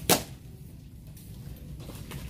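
A single sharp knock, over a steady low background hum.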